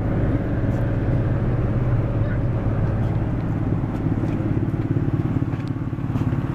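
2003 Ford Windstar's V6 engine idling steadily at about 1,000 rpm, with an even rapid pulsing.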